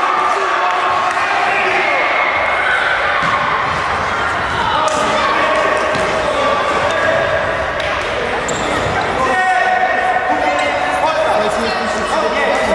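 A futsal ball being kicked and bouncing on a sports-hall floor, the knocks echoing, amid overlapping shouting from players and spectators.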